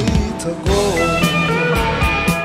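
Blues-rock band recording in an instrumental passage: an electric guitar plays notes that bend in pitch over bass and a steady drum beat.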